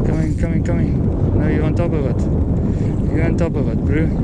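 Wind buffeting the microphone with a constant low rumble, broken by short unclear voice exclamations.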